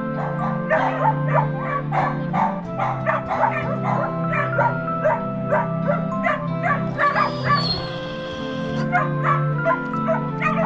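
Several dogs barking and yipping in kennels, short calls several a second, over a soft music score of held notes. A brief hiss cuts in about seven seconds in.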